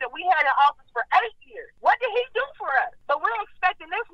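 Speech only: a person talking continuously, sounding thin as over a telephone line.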